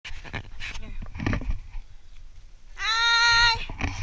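Rustling and light clicks, then one loud, held call about three seconds in, lasting under a second at a steady, slightly rising pitch.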